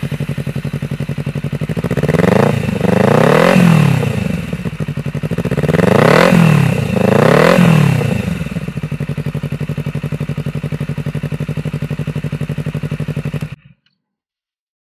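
Honda CBR250RR parallel-twin engine running through an Over Racing Japan exhaust: idling, then revved up and down twice in quick succession around two seconds in and again around six seconds in, settling back to idle. The sound cuts off suddenly near the end.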